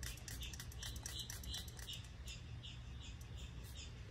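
Faint crackling of tiny irregular pops, several a second, over a low steady hum: air bubbles bursting at the surface of freshly poured epoxy resin after a mist of denatured alcohol.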